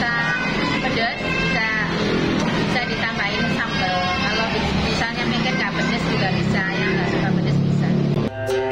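A woman speaking in an interview, over a steady low background rumble.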